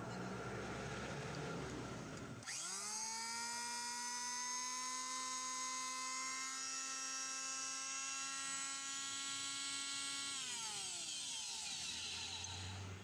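An electric hand planer's motor, after a bearing change and service, starts suddenly after about two seconds of rough noise. It spins up within a fraction of a second to a steady high whine, runs for about eight seconds, then winds down near the end.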